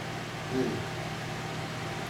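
Steady low hum and hiss of room noise, with a brief faint murmur of a voice about half a second in.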